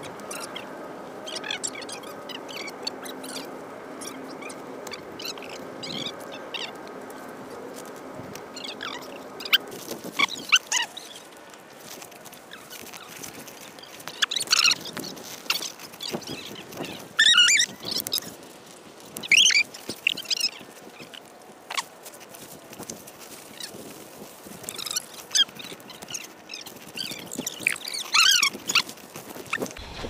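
Birds calling outdoors: short calls that fall in pitch, repeating irregularly from about ten seconds in, over a faint steady background noise.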